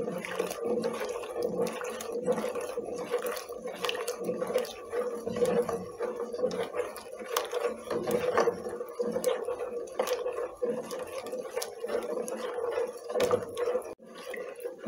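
A spoon stirring thick atole in a stainless steel pot, with irregular clicks and scrapes of the utensil against the pot, a few each second, over a steady hum.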